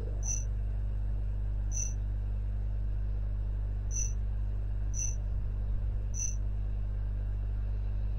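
Five short, sharp computer mouse clicks spread over several seconds, the sound of menu folders being opened one after another. Under them runs a steady low hum.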